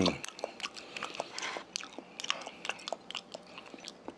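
A person chewing raw fish sashimi with the mouth close to the microphone: irregular wet mouth clicks and smacks, several a second.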